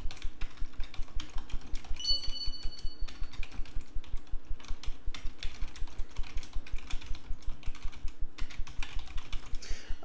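Typing on a computer keyboard: a quick, steady run of key clicks, several a second, with a brief high tone about two seconds in.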